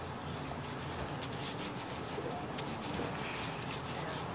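Faint rustling of a paper napkin as greasy hands and mouth are wiped, with a few soft scattered ticks over steady low background noise.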